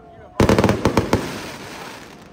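Aerial firework bursting overhead: a sudden loud bang about half a second in, then a rapid string of crackling cracks for about a second, fading out.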